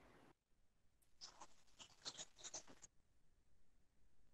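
Near silence, broken by a faint, quick run of clicks and scratches lasting about two seconds, starting about a second in.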